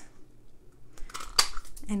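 Handheld craft tag punch cutting through a strip of cardstock, with one sharp click as it snaps shut about one and a half seconds in.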